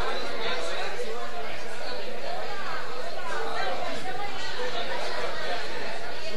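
Crowd chatter: many people talking at once in a large room, no single voice standing out.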